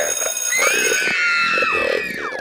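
An electronic sound effect: a steady bell-like ringing tone, then a cluster of pitched tones that rise slightly and glide downward, dying away at the end.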